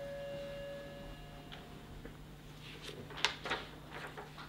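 Quiet room with a faint steady tone dying away in the first second and a half, then a few short paper rustles about three seconds in as book pages and a loose sheet are handled.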